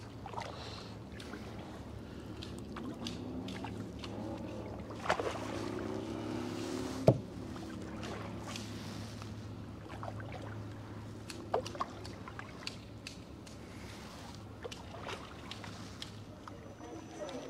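Tandem kayak under way: paddle strokes and water moving along the hull, with scattered sharp knocks, the sharpest about seven seconds in, over a steady low hum.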